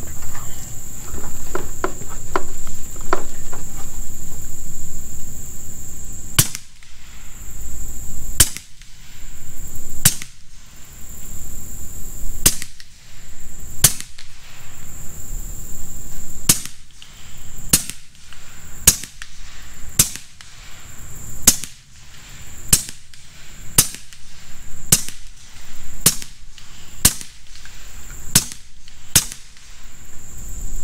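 Huben K1 semi-automatic PCP air rifle with a moderated barrel firing a string of about seventeen shots, starting about six seconds in and coming one every one to two seconds. A steady, high insect drone runs underneath.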